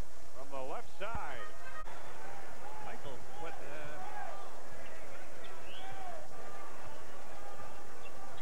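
Broadcast sound of indistinct voices and music, with a brief break in the sound about two seconds in.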